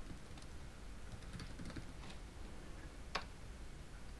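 Computer keyboard keys being typed: a scatter of faint, light clicks, with one sharper click a little after three seconds in.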